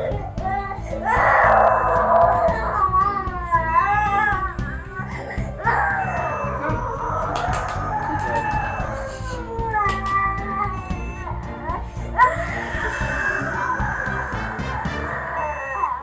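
A toddler crying hard in long wailing cries a few seconds each, with background music underneath.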